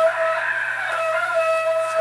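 A rooster crowing: one long call held at a steady pitch.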